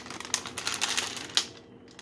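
Crinkling of a plastic cookie package being handled: a quick run of crackles lasting about a second and a half, with one sharper crack near the end, then it stops.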